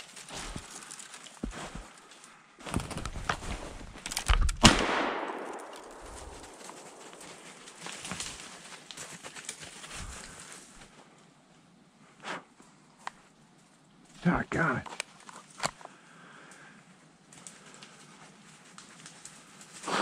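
A single loud shotgun shot about four and a half seconds in, with a short echo through the woods, just after a rush of noise. Scattered crunches and snaps of walking through snowy brush before and after.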